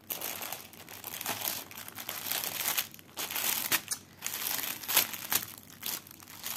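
Clear plastic sleeve of a cross-stitch kit crinkling as it is handled, in irregular bursts with the sharpest crackle about five seconds in.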